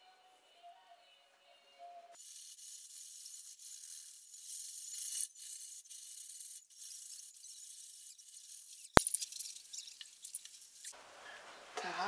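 Stainless steel scouring pad scrubbing an oven floor to loosen a dried grease stain soaked with baking soda and citric acid. It makes a rasping scratch that starts about two seconds in and rises and falls with the strokes. One sharp click comes about nine seconds in.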